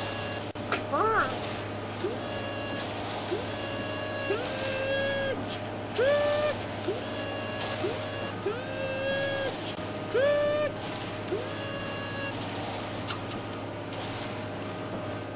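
A series of short pitched tones, each gliding up and then holding briefly before cutting off, about one a second, over a steady low hum.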